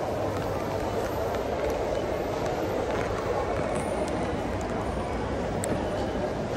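Busy terminal crowd hubbub: many indistinct voices blending into a steady murmur, with a few faint clicks.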